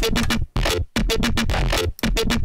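Electronic bass-music sound built by resampling recorded audio and mangling it in Melodyne instead of a synth, played back as a chopped phrase. It comes in three buzzy, stuttering bursts with a deep low end, separated by brief gaps.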